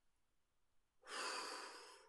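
A man taking one deep, audible breath about a second in, fading away over about a second: a calming breath.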